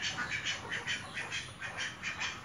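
Ducks quacking in a quick, continuous run of short calls, about five a second.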